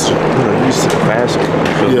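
Talking over a loud, steady background noise.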